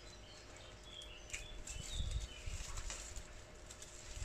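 Faint rustling and crackling of dead pea plants being handled and pulled from their supports, with low rumbling wind on the microphone. A couple of short high bird chirps come through about a second and two seconds in.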